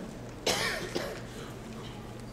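A single cough about half a second in, sudden and sharp, fading over about half a second.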